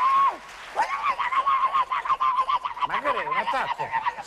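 A man's high, nasal wailing cry held on one pitch: a short one at the start, then a long one from about a second in that wavers near the end.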